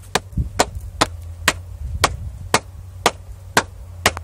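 A pair of sneakers knocked together sole against sole, a sharp clap about twice a second in an even rhythm.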